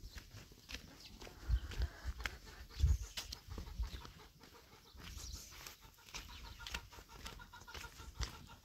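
Footsteps on dry, stony dirt ground, about two steps a second, with a few low thumps. Chickens cluck faintly in the background.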